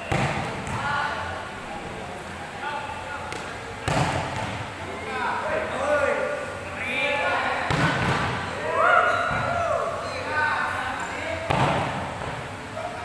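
Volleyball being hit hard in a spiking drill: four sharp smacks about four seconds apart, the first as a player spikes.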